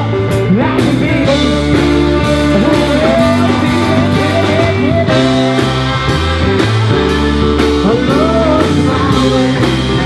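Live blues-rock band playing an instrumental passage: a saxophone carries the lead with gliding, bending notes over electric guitar, bass guitar and a drum kit keeping a steady beat.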